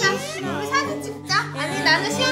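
Toddlers babbling with high-pitched, wordless calls over background music.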